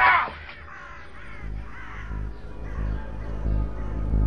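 A bird calling repeatedly, short harsh calls about twice a second, over a low pulsing music drone, right after a louder sound cuts off.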